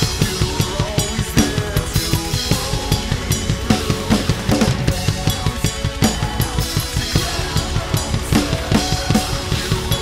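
Acoustic drum kit played hard to a steady rock beat: bass drum and snare strokes with crash cymbal hits and fills. A recorded song plays underneath, its instrumental part with no singing.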